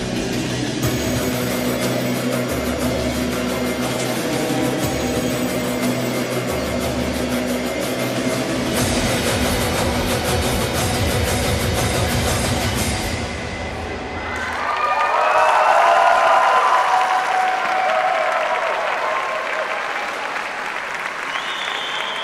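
Recorded programme music for a figure skating routine with a steady low beat, which stops about fourteen seconds in. An audience then applauds and cheers, loudest a couple of seconds after the music ends.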